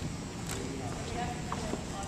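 Indistinct voices of several people echoing in a large gym, with a few short sharp knocks on the hardwood floor.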